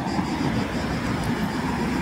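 Cars driving past close by on a road bridge, a steady rush of engine and tyre noise.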